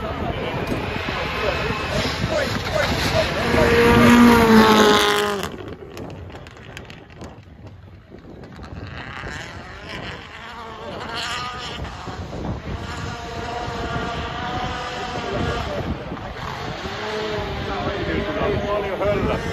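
A rally car's engine at high revs passing close by, loudest about four seconds in and cut off abruptly about a second later. After that, engine noise further off mixes with spectators talking.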